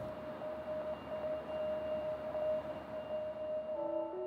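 Ambient background music: a single note held steadily, with further notes joining in near the end.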